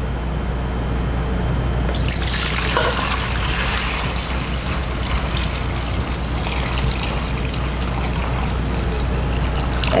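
Hot water poured from a stainless steel pot into a stainless steel mixing bowl: a steady, splashing pour that starts suddenly about two seconds in and runs on to the end.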